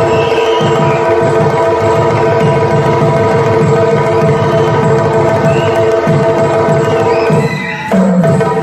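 Yakshagana background ensemble playing an instrumental passage: fast, continuous drumming over a steady, unbroken drone. The loudness dips briefly near the end.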